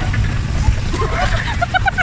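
Low rumble of an electric bumper car driving across the rink floor. From about a second in, a person's voice calls out in short repeated syllables.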